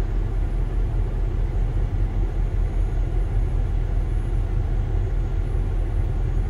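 Kenworth semi-truck's diesel engine running at a raised idle during a parked DPF regeneration, a steady low rumble heard from inside the cab.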